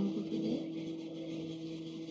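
Pause between speech on a video call: low background noise with a steady faint hum, and a faint murmur of a voice right at the start.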